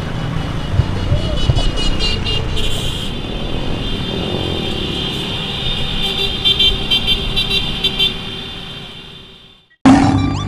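Motorcycle and van engines in slow street traffic, with horns tooting again and again over the engine rumble. The sound fades out near the end.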